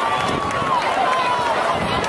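A crowd of voices talking over one another, with no music playing.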